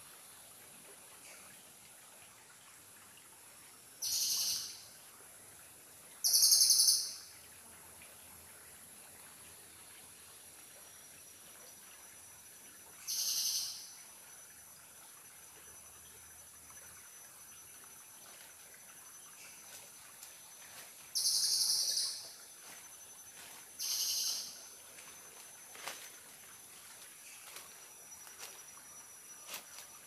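A bird calling in five short, high-pitched bursts spaced several seconds apart, the second and fourth the loudest, over a faint steady high tone from the forest.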